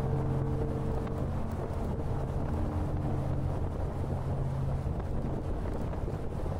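Wind rushing over the microphone of a Harley-Davidson Fat Boy at road speed, with the motorcycle's low rumble underneath. Background music dies away about a second in.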